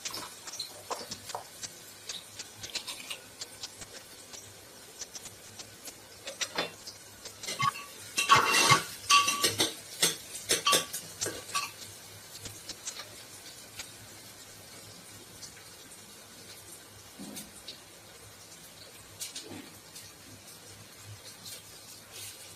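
A metal spoon stirring chopped onion in a pan on a gas stove, clinking and scraping against the pan, with a louder run of clinks about eight to eleven seconds in, then only a few faint knocks.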